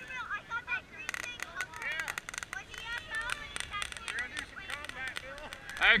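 Ground fountain firework crackling, a quick irregular run of sharp pops from about a second in, over distant voices of people talking.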